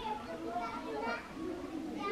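Several children's voices at play, overlapping and indistinct, calling and chattering in the background.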